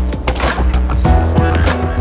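Loud intro music with a steady bass, regular drum hits and swishing transition effects.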